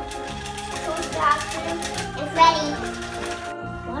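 Cheerful background music with a child's voice, over the steady whirr and clicking of battery-powered TrackMaster toy trains running on plastic track.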